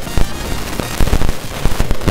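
Glitchy, corrupted recording audio: irregular loud pops and crackles, the loudest about a quarter-second and one second in, over background music.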